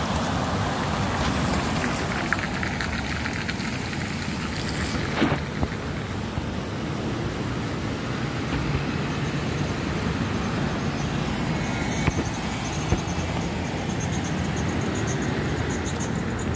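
Road traffic passing, a steady wash of car and tyre noise, with a few small clicks in the first seconds. Faint high chirping, like crickets, sets in over the last few seconds.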